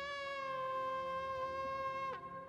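Shofar (ram's horn) blown in one long, steady note that slides down in pitch as it stops at the very end.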